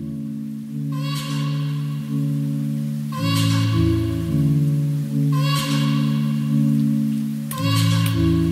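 Calm instrumental background music: sustained low chords that change about every two seconds, with a bell-like chime struck roughly every two seconds.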